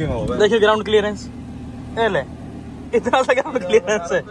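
People talking and laughing inside a car over the steady low hum of its running engine, with a short sharp click from the door latch near the start.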